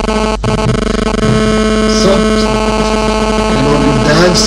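A steady, buzzing drone with many overtones, with a low voice wavering beneath it.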